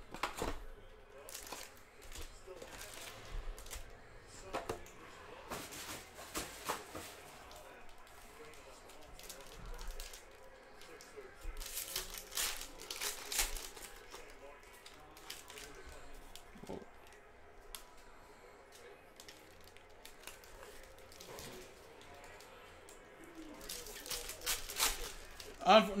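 Foil trading-card packs being torn open and handled: irregular crinkling and tearing of the foil wrappers, with sharp rustles throughout. The loudest rustles come a little before the middle.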